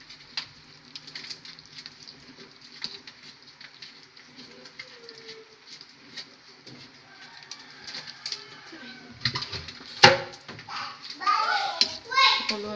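A pot of sinigang boiling on the stove while a metal ladle stirs it in a large aluminium pot: scattered small pops and clicks, with a sharp clink of the ladle against the pot about ten seconds in. Children's voices rise in the background in the last few seconds.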